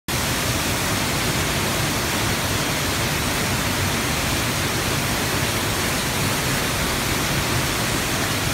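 Waterfall heard from close up, water falling down a rock face onto boulders: a steady, unbroken rush.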